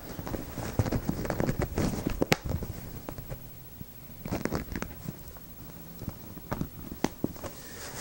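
Handling noise from a PhotoSEL strip softbox: its fabric and diffuser cloth rustling as the inner diffuser is hooked onto the elastic straps inside, with scattered light clicks, the sharpest about two seconds in.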